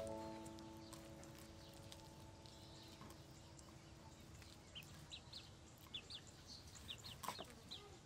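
Faint, nearly silent scene: a chord of steady tones rings out at the start and fades over about four seconds, then short high bird chirps come from about five seconds in, with a light knock near the end.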